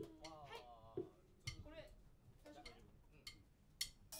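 Near silence: faint voices talking in the room, with a few small clicks and knocks.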